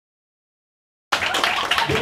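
Dead silence, then about a second in, audience applause cuts in abruptly.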